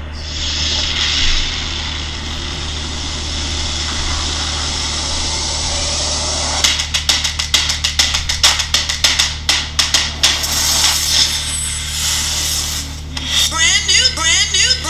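Soundtrack of a promo video played back: a steady rushing rocket-engine roar with a low hum for the first six or so seconds, then a rapid run of sharp hits and clicks, with music starting near the end.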